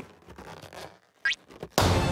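Cartoon sound effects: a short, quickly rising squeak, then a sudden loud pop near the end as a balloon bursts into confetti, leading straight into music.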